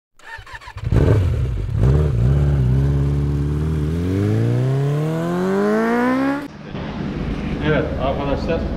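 Motorcycle engine revving: a couple of quick blips, then a long, steady climb in pitch that cuts off suddenly about six and a half seconds in.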